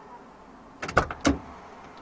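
A quick run of sharp clicks ending in two loud knocks about a quarter second apart, from something handled inside a stationary car's cabin.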